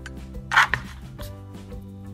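Soft background music with steady held notes. About half a second in comes one short scraping rustle from hands handling ribbon and a hot glue gun; it is the loudest sound.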